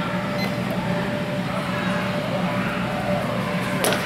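Steady hum of a large indoor hall with faint voices, then one sharp clack of a longsword strike near the end, as the fencers' exchange lands a hit.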